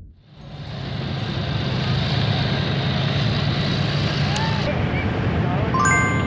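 Steady drone of a small aircraft flying overhead, heard in outdoor ambient noise, rising in just after the start. A short electronic chime sounds near the end.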